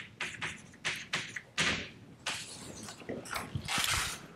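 Chalk writing on a blackboard: a rapid, irregular series of taps and short scratchy strokes, with a few longer strokes among them.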